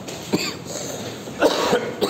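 A person coughing: a short cough about a third of a second in, then a louder one about one and a half seconds in.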